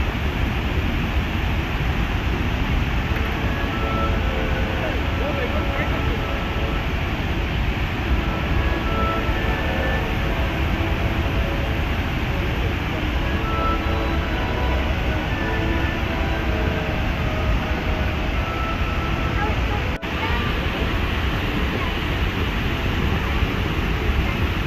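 Steady rushing roar of Horseshoe Falls, heavy in the low end, with faint chatter of people's voices under it. The sound cuts out for an instant about twenty seconds in.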